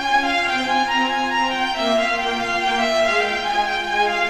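A solo violin playing baroque music with a string orchestra, held bowed notes moving from pitch to pitch in a melodic line.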